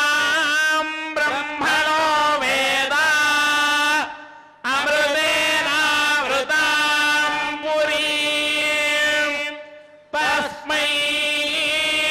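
Male voices chanting Sanskrit Vedic mantras on a steady reciting pitch, in long phrases with brief breaks about four seconds in and near ten seconds.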